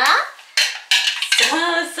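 Wooden chopsticks clicking and scraping against a small glass bowl as a toddler beats egg in it, with a few sharp clinks about half a second and one second in.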